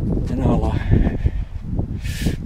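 A brief burst of a man's voice about half a second in, over a steady low rumble of wind on the microphone.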